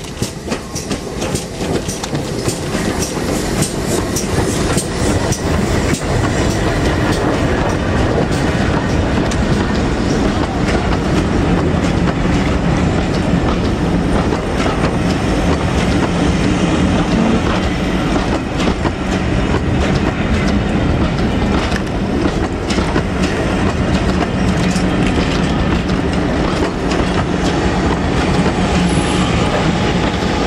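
Steam-hauled passenger train passing close by: GWR Castle Class 4-6-0 no. 4079 Pendennis Castle with a rake of coaches. It grows louder over the first few seconds as the engine draws near, then the coaches roll past with a steady rumble and wheels clicking over the rail joints.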